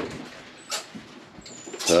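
Small monkeys making a couple of faint, thin, very high-pitched peeps, the second falling slightly. There is quiet rustling and a short scuffle about three quarters of a second in, as a monkey climbs and jumps on the man's clothing.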